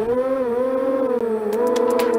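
Brushless motors and 3-inch Diatone 3045 bullnose propellers of a Lizard 150 FPV racing quad whining as it throttles up and lifts off, the pitch rising sharply at first and then wavering up and down with the throttle. A quick, regular ticking joins in near the end.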